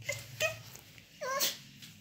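Two short, quiet vocal sounds: a brief one about half a second in and a longer one with a falling pitch near a second and a half.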